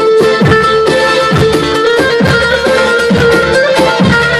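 Loud amplified band music for folk line dancing: a plucked-string lead melody over a held drone and a steady drum beat, its low thumps falling in pitch, about two a second.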